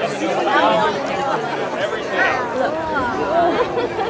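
Speech only: voices talking, with overlapping chatter.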